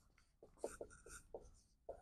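Dry-erase marker writing on a whiteboard: a few faint, short strokes.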